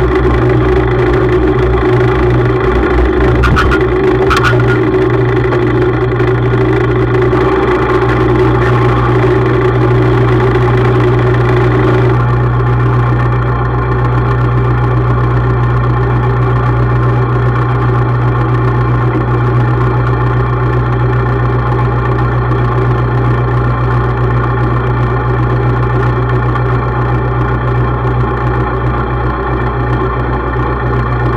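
Tractor engine running close to the microphone, with a few clicks about three to four seconds in. About twelve seconds in it drops back to a lower, steady idle.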